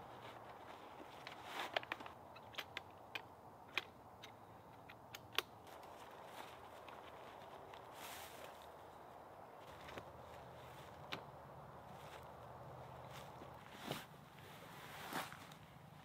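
Helinox Zero ultralight chair being unpacked and assembled: a string of light clicks and knocks as the shock-corded aluminium poles seat into the hub, then brief rustles of the nylon stuff sack and fabric seat being pulled over the frame, with footsteps in dry leaves.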